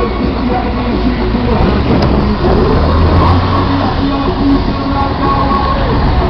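Steady low rumble of a car driving along a road, engine and road noise from the vehicle carrying the microphone, swelling about halfway through, with fainter wavering tones over it.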